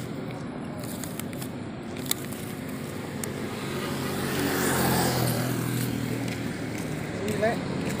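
Motorbike engine idling steadily at the roadside, with another vehicle passing and growing louder to a peak about five seconds in before fading.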